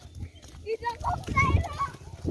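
People's voices talking, over a low steady rumble.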